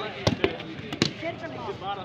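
A volleyball being struck by hand during play: a few sharp slaps about a quarter second in and again near the middle, among players' and onlookers' shouting voices.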